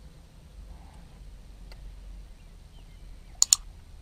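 Two sharp mouse clicks in quick succession near the end: the click sound effect of a subscribe-button animation. They sit over a low, steady background rumble.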